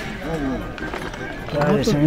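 Quieter voices talking in the background between louder bits of close conversation, with no distinct non-speech sound standing out.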